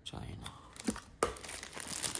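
Crinkling and rustling of a clear plastic packaging bag and a small cardboard box being handled and opened, with two sharp snaps about a second in.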